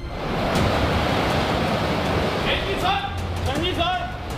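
Steady rush of sea water and wind past a ship under way, the noise of its bow wave and wake. About two and a half seconds in, a voice starts calling out over it.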